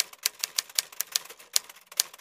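Typewriter sound effect: a rapid, slightly uneven run of key strikes, about seven a second, as typed text appears letter by letter.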